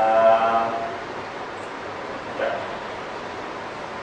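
A voice holding a drawn-out hesitation sound, like a long 'uhh', for nearly a second at the start, with a second short vocal sound about two and a half seconds in, over steady room hiss.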